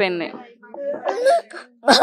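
A young woman crying: after a spoken phrase trails off, a few quiet, high, wavering whimpering sobs.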